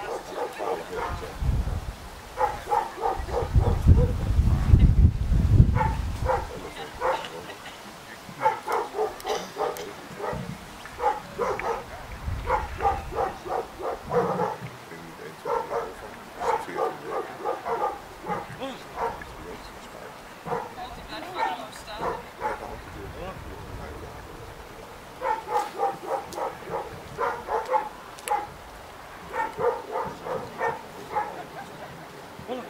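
A dog barking in quick runs of several barks each, the runs recurring through the whole stretch. A few seconds in, wind rumbles on the microphone.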